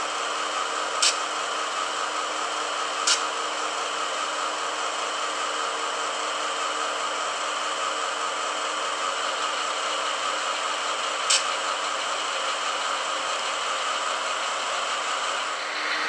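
A steady mechanical hum with a few faint clicks, about one and three seconds in and again near eleven seconds.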